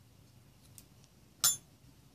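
Small metal scissors snipping through a yarn tail: one sharp metallic click about one and a half seconds in.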